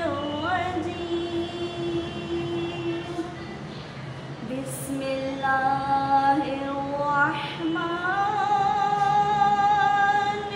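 A girl's solo voice reciting the Quran in melodic qirat style, holding long, slowly bending notes. Her voice dips about four seconds in, then rises into a higher held phrase.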